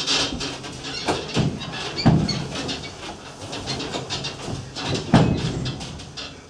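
A thin foam mattress being rolled up and handled on the floor, with rustling of the fabric and several dull thumps as it is pushed and dropped, the heaviest about two seconds in and again near the end.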